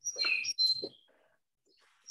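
A bird chirping briefly, a few short high calls packed into the first second.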